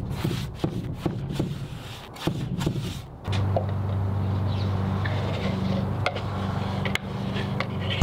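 Paintbrush strokes scratching over a bare wood board as a wood-ageing stain is brushed on. About three seconds in, a louder steady low hum takes over.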